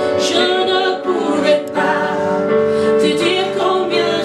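A woman singing a gospel song, accompanied by sustained chords on a Yamaha electronic keyboard.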